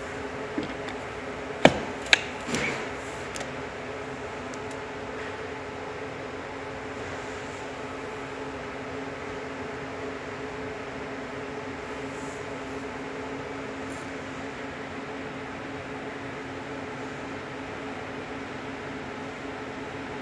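A Type 2 EV charging plug pushed into a charging-point socket: two sharp clicks about one and a half and two seconds in, followed by a brief rattle. A steady low hum runs underneath throughout.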